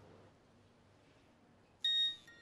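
Quiet room tone, then near the end a mobile phone gives a short, loud electronic beep as a call is being placed.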